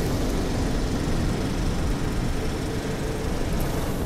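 Intro sound effect under the title card: a loud, steady rumbling noise with no tune or voice in it.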